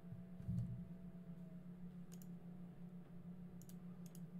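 Faint clicks at a computer, one pair around two seconds in and another near the end, over a steady low hum. A low thump comes about half a second in.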